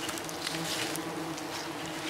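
Honey bees buzzing in a steady drone around freshly harvested honeycomb.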